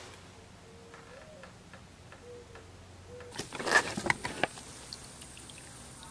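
Gloved hands handling a rubber coolant hose: a short cluster of rustles and clicks a little over three seconds in, then a few small ticks.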